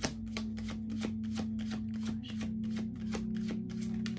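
A deck of tarot cards being shuffled by hand, an even patter of card flicks about four a second, over background music with long held notes.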